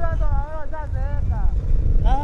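Voices talking over a steady low rumble of street traffic.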